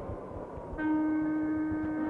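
Film background score: after a moment of faint hiss and rumble, a single long held note comes in about a second in and stays steady.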